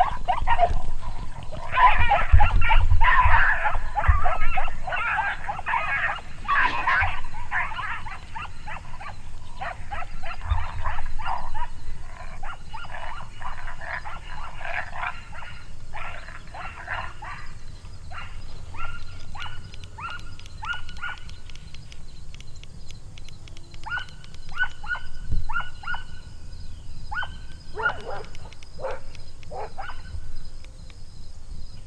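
Coyotes yipping and howling: a dense, loud chorus in the first several seconds, thinning into short, evenly repeated yelps, with a few falling yelps near the end.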